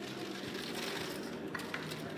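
Casino chips clicking together in quick, repeated small clicks as dealers stack and sort them on a roulette table, with a few sharper clacks near the end.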